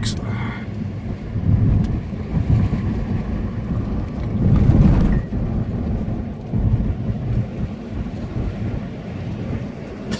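Cabin road noise of a Nissan Pathfinder driving on a dirt road: a low, uneven rumble of tyres on gravel and the body jostling over bumps, loudest about five seconds in.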